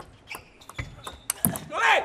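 Table tennis ball struck back and forth in a rally, a string of sharp clicks of ball on bat and table, a few of them close together about one and a half seconds in. A loud shout near the end, the loudest sound, as the point is won.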